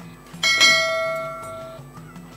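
A single bell chime sound effect, struck once about half a second in and ringing out for over a second before it fades, marking the round's title card. Faint background music runs underneath.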